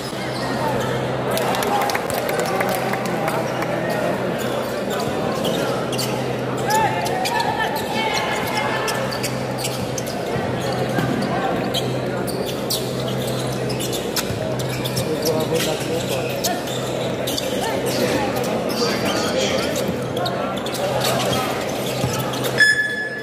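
Basketball game crowd noise in a large gymnasium: a continuous din of spectator chatter and shouting, with the ball bouncing on the hardwood floor and short sharp sounds from the play. A low steady hum runs underneath.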